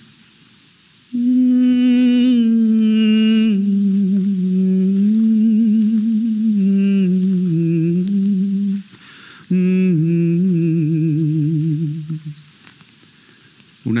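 A man's voice singing a slow, sad melody without words, in two long phrases with a wide vibrato. The pitch steps gradually downward through each phrase.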